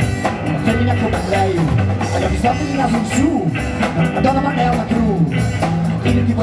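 Live band playing upbeat rock-and-roll music: drum kit and guitars under a melody line.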